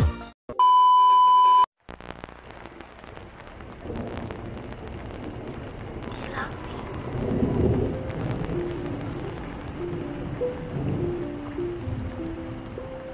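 A steady electronic beep about a second long near the start, ending abruptly. It is followed by a hiss like tape static or rain, and a slow melody of held notes comes in partway through.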